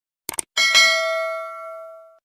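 Subscribe-button sound effect: a quick triple mouse click, then a bell chime about half a second in that rings on and fades slowly.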